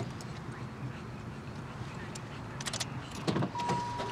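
Steady low rumble of a stationary car heard from inside the cabin. A few clicks come near the end, then a thump about three seconds in, and right after it a steady single-pitch electronic warning tone starts, as a car door is opened.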